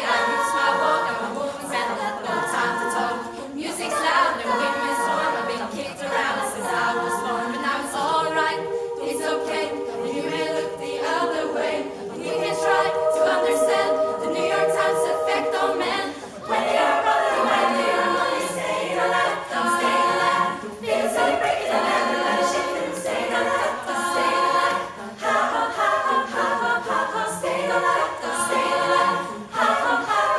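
Women's choir singing a cappella in close harmony, a vocal arrangement of a pop song, with held chords in places.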